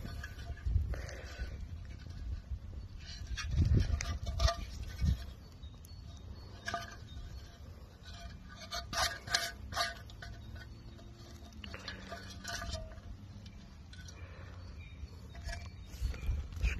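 Handling noise from a freshly dug-up ashtray turned over in the hand: scattered light scrapes, rubs and clicks, in clusters a few seconds apart, over a steady low rumble.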